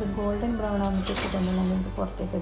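A voice over background music, with a brief scraping noise a little over a second in as the plate of baked buns is slid out over the metal oven rack.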